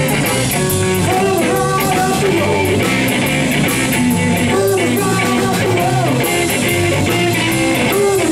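Live blues-rock band playing: electric guitar with bending notes over electric bass and a drum kit, cymbals struck in a steady beat.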